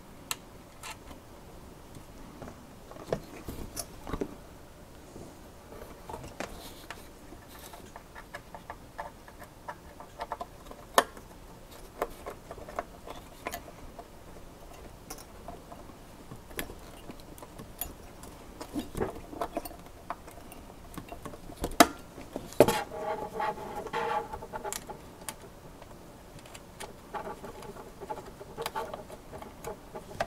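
Small metal clicks and taps as nuts are threaded by hand onto standoffs through a CPU cooler's steel mounting bracket on the back of a motherboard. About three quarters through comes a louder knock with a brief ring after it.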